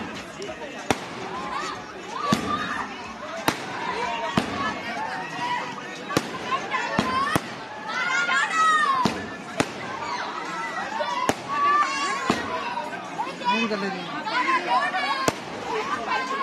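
Several voices talking at once, broken by about a dozen sharp firecracker cracks at irregular intervals, one to two seconds apart.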